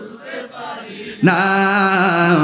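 A man's voice chanting a devotional song line over a PA system. Soft, wavering singing for about the first second, then a loud, long held note comes in a little past halfway.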